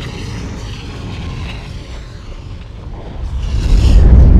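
Cinematic logo-reveal sound effect: a deep rumble that eases a little, then swells louder near the end.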